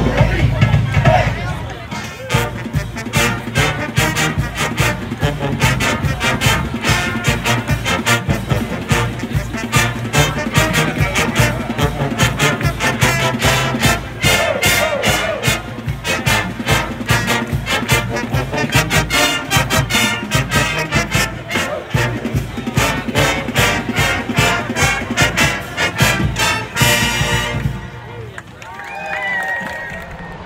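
College marching band playing a lively tune, brass over a steady drum beat, with crowd noise underneath. It ends on a held chord a few seconds before the end, and the level then drops.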